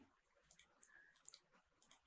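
Faint, scattered clicks of a computer keyboard and mouse as text is edited, about five short clicks over two seconds with near silence between them.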